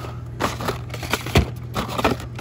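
Hot Wheels blister-carded cars being flipped through and pulled from a cardboard display box: a quick series of plastic-and-cardboard clacks and rustles, the loudest about one and a half seconds in.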